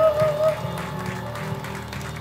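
The final held note of a jazz ballad, wavering with vibrato, ends about half a second in, while the piano, bass and band's last chord rings on and fades more quietly.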